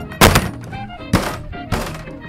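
A fist thumping a wooden tabletop three times at uneven gaps, over faint background music.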